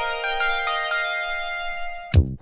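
Italo-disco synthesizer intro: a held synth tone under a run of short synth notes stepping in pitch, with no drums.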